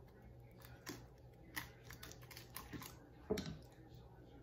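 Faint, scattered clicks and light taps of a spoon against a glass bowl and a ceramic plate as sauce is scooped and spread over fried fish.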